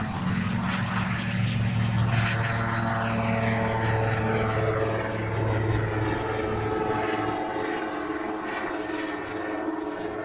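Super Drifter ultralight's engine and propeller at full power on a short take-off and steep climb. It passes close, its pitch drops as it goes by, and then it fades steadily as the aircraft climbs away.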